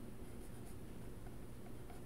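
Faint scratching of a pen writing on a paper sheet.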